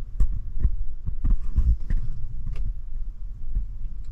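Irregular dull thumps and a few clicks from handling and moving about inside the truck cab, over a steady low hum.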